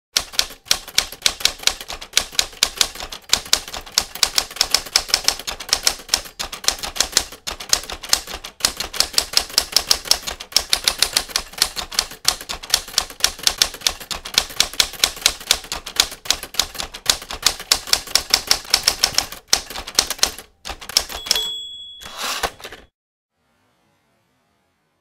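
Typewriter keys clacking rapidly and steadily for about twenty seconds as text is typed out. Near the end there is a short high ring, then a brief rasping sweep, then the typing stops.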